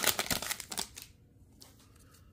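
Foil wrapper of a trading-card pack being torn open: a quick run of crinkling crackles in the first second, then fainter rustles and clicks as the cards are handled.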